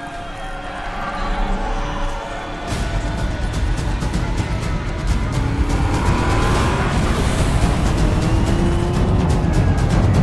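Film soundtrack mix: held music tones, then from about three seconds in a loud rumble of many vehicle engines in a convoy, with rapid percussive hits and rising revs.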